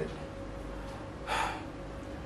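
A person's short audible breath about a second and a half in, over quiet room tone with a faint steady hum.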